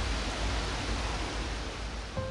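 Steady rushing background noise with a low rumble, without tones, speech or distinct events.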